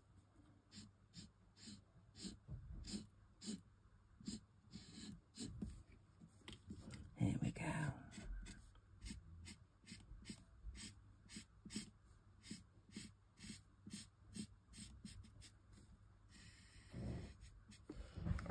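Alcohol marker nib scratching across die-cut card in short, quick colouring strokes, about three a second. A brief voice sound comes in about halfway through.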